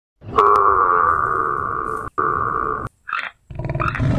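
An animal call held on one steady pitch for about two seconds, cut off abruptly and resumed briefly, followed by a short higher-pitched call near the end.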